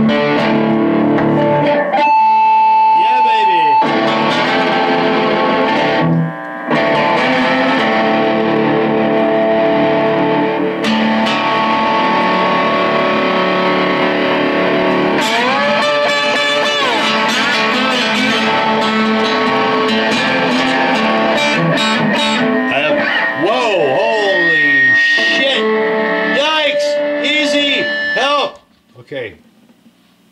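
Electric guitar with single-coil pickups played through a Boss Katana Mini amp on its distorted Brown channel, with the delay effect on: sustained notes, string bends and slides. The playing stops about two seconds before the end. The player finds the amp doesn't like single-coil pickups.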